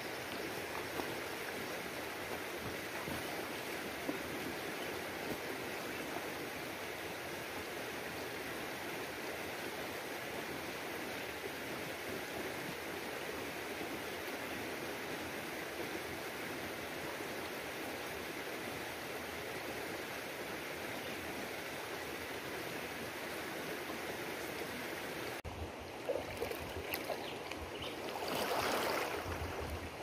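Shallow, stony river flowing, a steady rushing of water. Near the end the sound changes abruptly to water being splashed by people swimming, with one louder swell of splashing.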